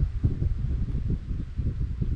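Gusty wind buffeting the microphone, an uneven low rumble.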